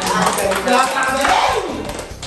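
Several people laughing and shouting, with one voice swooping down in pitch near the end.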